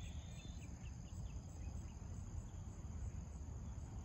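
Steady high-pitched insect chorus over a low background rumble.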